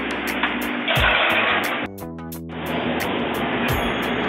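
Background music with a steady beat over the constant rush of a commercial kitchen's ventilation. A low thump comes about a second in and another near the end, and the rush dips briefly around the middle.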